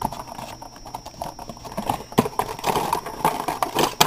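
Cardboard phone box and its plastic insert being handled and pried up by hand: irregular taps, knocks and rustling, with a few sharper knocks in the second half.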